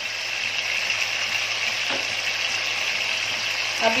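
Leftover mutton korma frying in oil in a pan, a steady sizzle, over a faint low hum.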